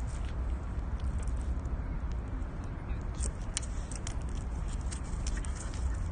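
Steady low rumble of wind and handling noise on a phone microphone outdoors, with scattered faint clicks and ticks.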